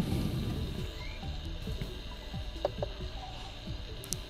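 Faint small clicks and scrapes of brass fittings as a refrigerant charging hose is screwed onto the tap of an R134a can.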